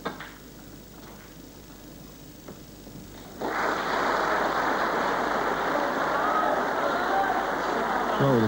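A snooker cue striking the cue ball with one sharp click, followed by a few faint clicks of balls over the next couple of seconds. About three and a half seconds in, audience applause breaks out suddenly and carries on steadily, greeting a pot in the break.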